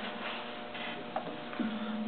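A pause in the talk with steady, low room hum and a single faint click about a second in.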